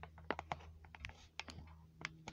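Quiet, irregular light clicks and taps: handling noise from fingers moving over a phone held close to its microphone.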